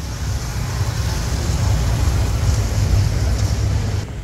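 Engine and road noise heard from inside the open rear of a songthaew (pickup-truck baht bus) on the move: a steady low rumble that grows a little louder over the first second.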